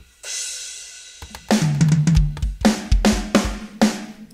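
MT Power Drum Kit 2 virtual drum kit played from MIDI controller pads. A cymbal crash about a quarter second in rings away, then from a little after a second in comes a run of drum hits with a deep kick drum under them.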